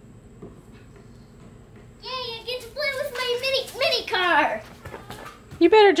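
A young child's high-pitched voice, its words unclear, from about two seconds in, after a faint steady hum; another voice begins just at the end.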